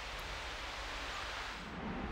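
Steady outdoor ambience: an even, wind-like hiss with no distinct events.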